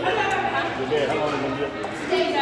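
Indistinct children's voices and chatter in a large indoor room, with no clear words.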